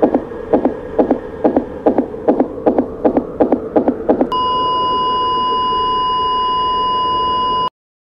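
Soundtrack effects: a fast, even pulsing beat of about two strokes a second, then from about four seconds in a long steady electronic beep that cuts off abruptly just before the end.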